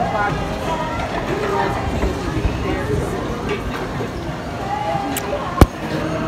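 Voices of people talking in a waiting crowd, with a single sharp knock near the end that stands out as the loudest sound.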